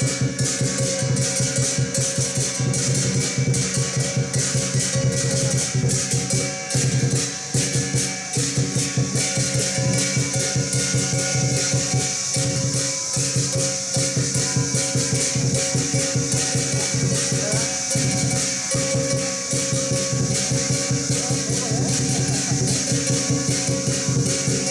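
Chinese lion-dance percussion, a large drum with clashing cymbals, playing a fast, unbroken beat with a steady metallic ringing over it.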